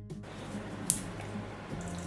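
Liquid clay slip pouring from a jug into a plaster mold, a steady wet pouring noise, over quiet background music.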